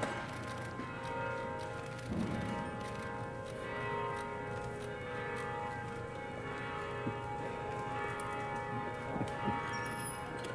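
Sustained, bell-like ringing tones held for seconds and shifting now and then, echoing in a large church, with a few faint knocks and shuffles.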